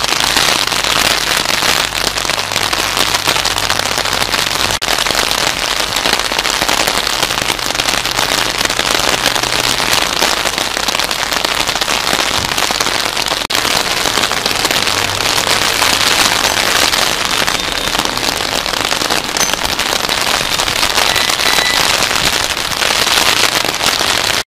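Steady rain falling on wet paving, a dense even patter of close drops that runs on without a break.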